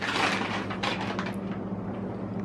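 Brown paper bag rustling and crinkling as a glass rum bottle is pulled out of it, with a few short handling clicks, over a steady low hum.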